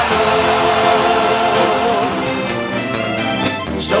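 Song accompaniment with an accordion playing a sustained, wavering melody. A voice comes in singing right at the end.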